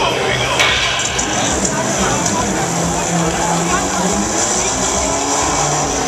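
Busy fairground din: a steady wash of crowd voices and noise, with some music in the mix.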